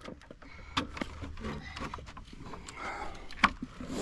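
A few light knocks and rattles from a child's plastic low-rider trike as he climbs on and gets it rolling on asphalt, over a faint low rumble.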